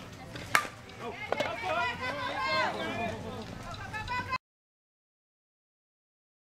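Softball bat striking the ball once, a sharp crack about half a second in, followed by raised, excited voices shouting; the sound cuts out to dead silence a little past four seconds in.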